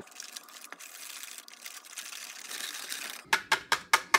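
Hand whisk stirring thick cheesecake batter in a mixing bowl: a wet swishing, then from about three seconds in a quick rhythmic tapping, about six a second, as the whisk knocks against the bowl.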